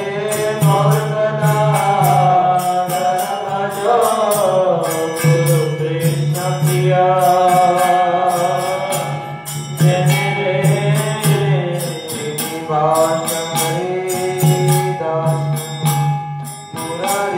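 Devotional kirtan: a voice sings a chanted mantra melody in long gliding phrases. It is accompanied by a steady low drone and rapid, rhythmic strokes of small hand cymbals.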